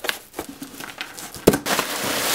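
Cardboard shipping box being opened: a few light taps and scrapes, a sharp snap about one and a half seconds in, then clear plastic wrapping crinkling as it is pulled out.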